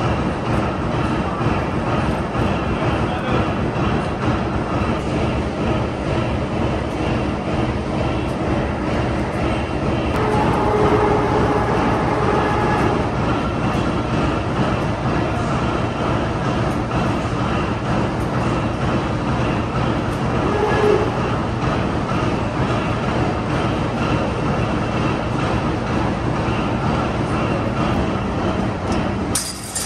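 Overhead crane running while it hoists a steel coil, a steady mechanical rumble and rattle. A brief higher tone comes in about ten seconds in and again about twenty seconds in.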